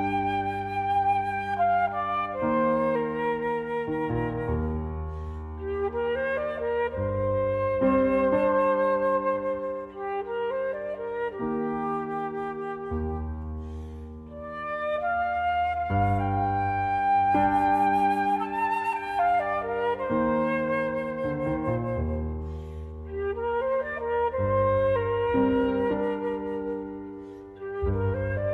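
Flute and piano duo: a concert flute plays long, slow phrases with vibrato, sliding up into some notes, over sustained low piano chords that change every few seconds.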